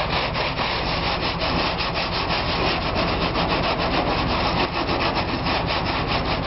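A stiff brush scrubbing graffiti off painted siding in quick, even back-and-forth strokes.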